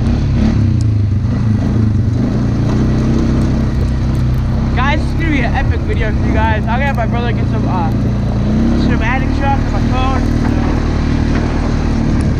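Four-wheeler (ATV) engine running steadily while ridden, its pitch rising a little as the throttle is opened twice. A person's wavering voice comes over it in two stretches in the middle.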